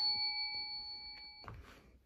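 A notification-bell 'ding' sound effect for a subscribe button, a clear high ringing tone fading away until it cuts off about a second and a half in.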